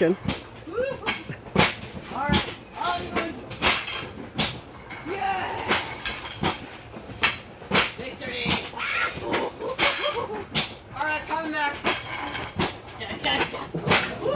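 Excited voices in short bursts of squeals and laughter, mixed with frequent sharp knocks and clicks.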